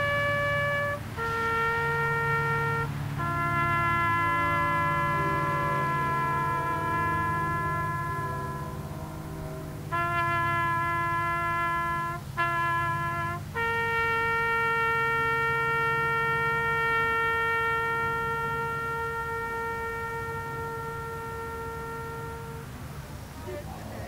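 A slow ceremonial tune played on a solo wind instrument, held notes with a few quick ornaments, ending on one long note that fades out shortly before the end.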